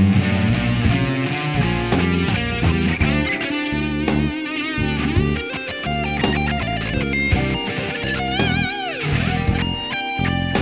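Fender Telecaster electric guitar playing an improvised rock-blues lead: quick runs of single notes, then a held note with wide vibrato and a bend that falls away near the end.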